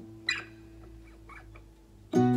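Acoustic guitar in a brief gap between strummed chords: a single low note rings on faintly. There is a short squeak about a third of a second in, and fainter squeaks just after a second.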